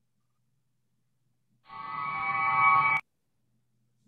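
A short musical sound effect from the Flash Mind Reader web animation as its crystal ball reveals the symbol: a held chord that comes in a little before halfway, swells louder for about a second, then cuts off suddenly with a click.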